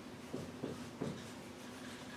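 Dry-erase marker being written across a whiteboard: a few short, faint strokes as letters are drawn.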